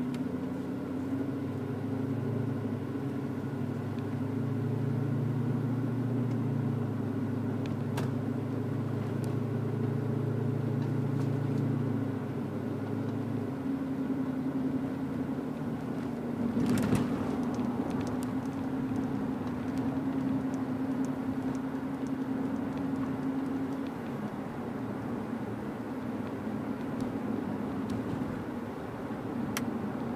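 Dodge Magnum R/T's 5.7 HEMI V8 through a Flowmaster American Thunder exhaust, heard from inside the cabin with the windows down while driving in town. The deep exhaust note is strong for about the first thirteen seconds, then drops back as the car settles to a lighter cruise. There is a single sharp thump about seventeen seconds in.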